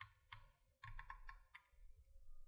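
Near silence with faint clicks of a computer mouse scroll wheel: a couple of single ticks, then a quick run of ticks about a second in.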